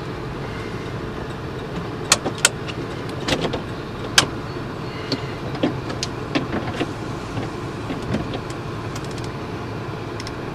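1996 Buick Roadmaster wagon's 5.7 L V8 idling steadily, heard from inside the cabin, with scattered light clicks and taps at irregular intervals.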